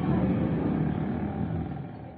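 Outdoor street-market ambience with a steady low traffic rumble, fading out toward the end.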